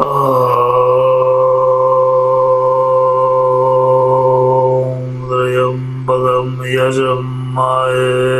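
A man's voice chanting: one low note held steady for about five seconds, then shorter chanted syllables.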